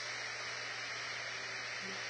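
Steady background hiss with a faint low hum: the noise floor of the recording in a pause between spoken phrases.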